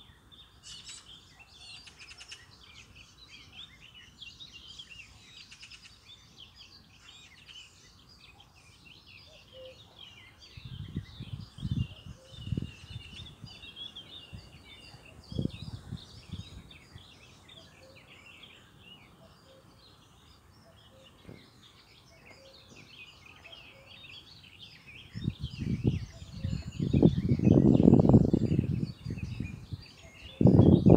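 Small birds chirping and singing throughout, with a few low thumps in the middle and a louder low rumble over the last few seconds.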